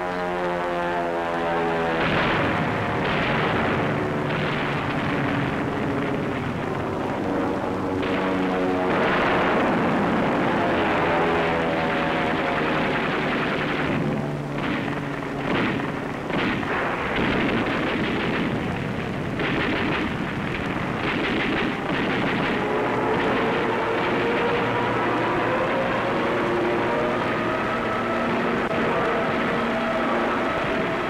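Propeller aircraft engines whose note falls in pitch at the start and rises again over the last several seconds, over steady gunfire and bangs. A run of sharp shots comes about halfway through.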